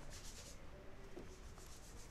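Faint scratching and rubbing of a stylus on a drawing tablet.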